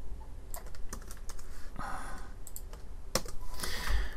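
Computer keyboard and mouse clicks: a scattering of short, sharp key presses and clicks as a URL is selected, copied and pasted with a Ctrl+V shortcut.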